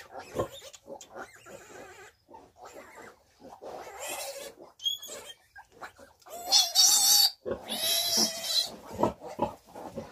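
Newborn piglet squealing as it is held up by the legs and injected with iron: short calls about four seconds in, then two loud, high squeals near the end.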